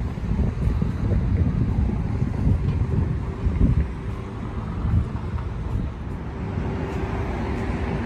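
Wind buffeting a handheld camera's microphone outdoors, an irregular low rumble that rises and falls in gusts.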